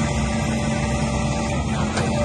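Caterpillar 316EL crawler excavator's diesel engine running steadily while the boom and bucket are worked, with a faint steady whine above the low engine note.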